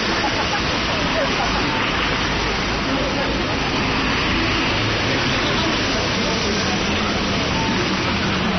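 Busy city street ambience: a steady wash of traffic driving past, cars and trucks, under the chatter of a crowd.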